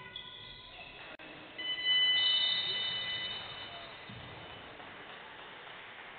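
Basketball shoes squeaking on the hardwood court, then a shrill referee's whistle blast about two seconds long, the loudest sound here.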